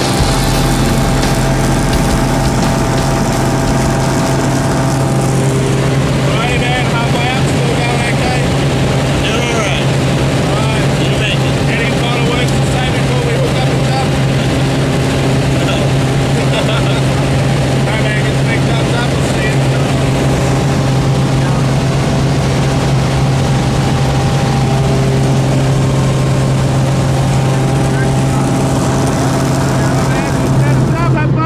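Steady drone of a small plane's engine and propeller, heard from inside the cabin in flight.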